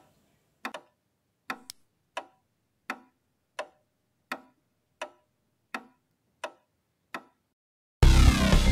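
A clock ticking steadily, about three ticks every two seconds, then stopping shortly before the end.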